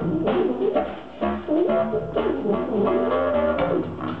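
Small jazz ensemble playing live: low wind instruments play bending, sliding lines over drums.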